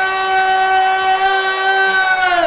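A voice holding one long, loud, steady note that drops away in pitch just after it ends.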